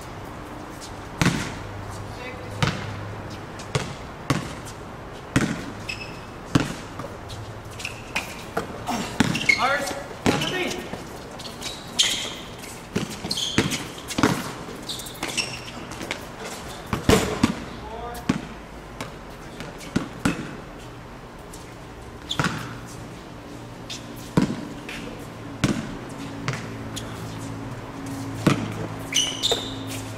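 A basketball bouncing repeatedly on a hard court as it is dribbled during play, in a string of sharp thuds, at first about one every second and a bit and more crowded in the middle stretch. Players' indistinct voices and shouts come between the bounces.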